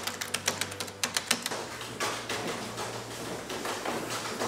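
Typing on a computer keyboard: quick irregular key clicks for the first second and a half, then they stop, leaving a low steady room hum.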